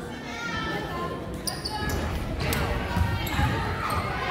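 Basketball bouncing on a hardwood gym court amid spectators' voices, with a few short high squeaks about a second and a half in.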